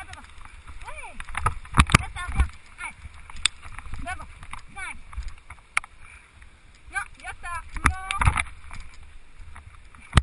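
Wheels rumbling and rattling over a rough gravel track, with sharp knocks from jolts over bumps and rocks. Repeated short squeals that bend up and down come in clusters, loudest about eight seconds in.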